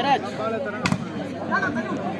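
Spectators' and players' voices calling out during a volleyball rally, with one sharp smack of the ball being struck about a second in.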